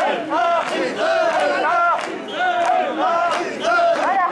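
Mikoshi bearers chanting in unison as they carry the portable shrine, a loud shouted call repeated two to three times a second, with many men's voices overlapping.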